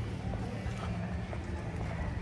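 Town-square street ambience: distant voices of passers-by and footsteps on stone paving, over a steady low rumble.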